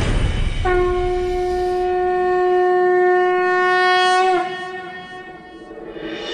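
A conch shell (shankh) blown as a ritual signal: one long steady note of about four seconds, starting just under a second in and bending slightly downward as it breaks off, following the tail of choral music.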